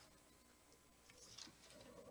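Near silence: room tone, with a faint rustle a little over a second in.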